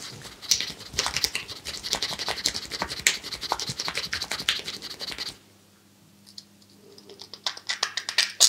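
Fast, dense scratchy rubbing of hands massaging over a man's ear and the side of his head. It stops abruptly about five seconds in, and a few lighter rubs return near the end.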